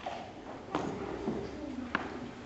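Two sharp knocks about a second apart, over faint murmuring voices in a large, echoing church.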